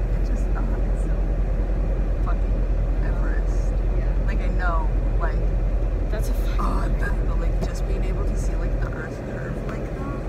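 Steady low rumble heard inside a car cabin, dropping in level about nine seconds in, with short high chirps and faint murmured voice sounds over it.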